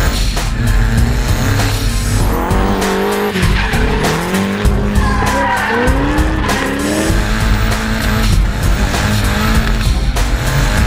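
Drift car engines revving, the pitch rising and falling several times, with tyres squealing, over background music with a steady beat.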